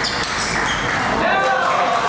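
Table tennis rally: a celluloid ball clicking back and forth off the rackets and table, with steady crowd chatter in a large hall.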